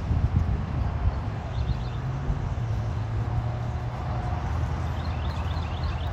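Pickup truck engine running at low revs with a steady low hum as it slowly reverses a fifth-wheel trailer.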